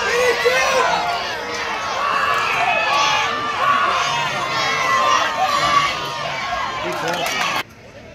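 Crowd of spectators shouting and cheering during a football play, many voices over one another, cutting off suddenly near the end.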